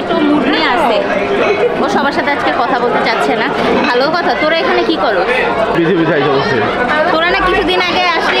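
Chatter of many people talking at once, overlapping voices with no pause.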